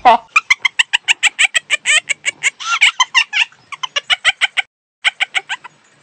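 A woman laughing hard in quick, even pulses, about six a second. The laughter breaks off for a moment, then comes back briefly near the end.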